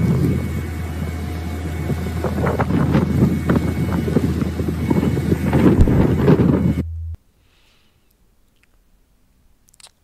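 Oshkosh Striker ARFF crash truck running with its Snozzle boom hydraulics, retracting the high-reach turret back toward its bed: a steady low hum under gusty wind noise on the microphone. It cuts off abruptly about seven seconds in.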